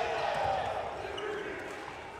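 A basketball being dribbled on a hardwood court, the bounces faint against low arena background noise.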